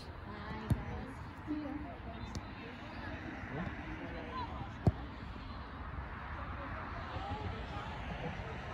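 Soccer-match sideline ambience: distant shouts and chatter from players and spectators over a steady outdoor background. A sharp thump about five seconds in, the loudest sound, with a lighter knock under a second in, as the ball is kicked.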